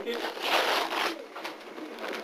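Wrapping paper rustling and tearing for about a second, then quieter.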